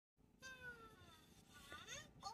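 Faint, high-pitched, squeaky voice-like calls: one slowly falling call, then short rising chirps near the end.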